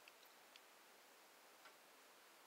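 Near silence: faint room tone with a few soft clicks.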